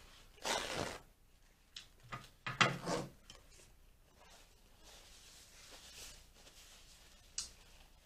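Paper sandwich wrapper rustling and crinkling as it is handled and folded, in a few short bursts in the first three seconds, then low room tone with a brief click near the end.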